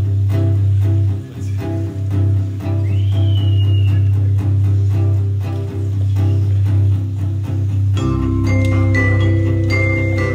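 A live band starts a song: strummed acoustic guitar chords over a strong, steady low bass note. About eight seconds in, mallet percussion such as marimba joins with ringing held notes and the bass deepens.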